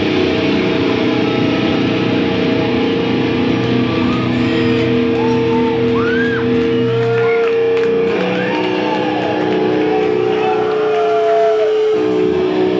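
Live rock band playing loud, with electric guitars holding long sustained notes and high sliding notes bending up and down over them from about a third of the way in.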